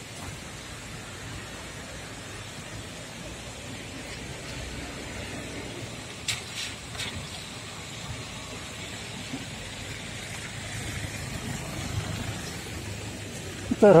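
Steady outdoor noise of rain and cars on a wet road, swelling slightly near the end, with a few sharp clicks about six to seven seconds in.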